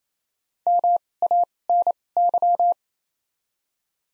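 Morse code tone sending the word "MANY" at 28 wpm with widened (2x Farnsworth) spacing between letters: four groups of beeps on one steady pitch, dah-dah, di-dah, dah-dit, dah-di-dah-dah, lasting about two seconds. This is the repeat of the word after it has been spoken.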